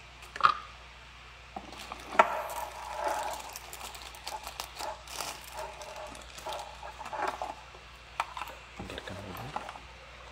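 A thin plastic packaging bag crinkling and rustling in irregular bursts as a computer mouse is pulled out of it, mixed with scattered clicks and knocks of a cardboard box and cable being handled.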